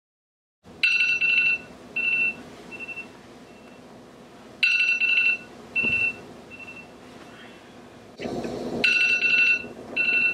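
Electronic alarm ringtone going off: a bright chime followed by three or four fading echo notes, repeating about every four seconds, starting about a second in. A rustling noise, as of bedding, comes in near the end.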